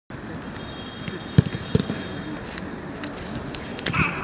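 Two sharp thuds of a football being struck, about a third of a second apart, followed by a few lighter knocks, over faint voices.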